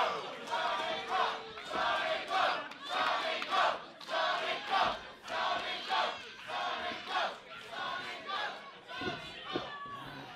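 Wrestling crowd chanting in unison, an even rhythmic chant of about two beats a second that dies away near the end.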